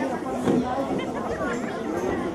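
Several voices talking at once: overlapping chatter with no single clear speaker.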